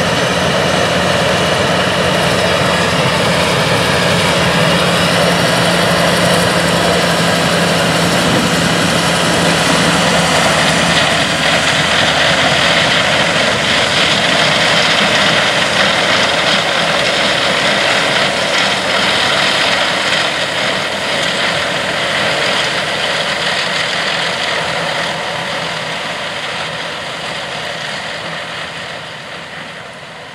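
A Claas Lexion 750 combine harvester and a tractor running together at close range while the combine harvests corn and unloads on the go, a dense steady machinery noise with a low engine hum. The sound fades out gradually over the last several seconds.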